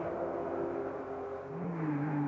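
Rally car engine heard from off-screen while the road is still empty, its pitch rising about one and a half seconds in.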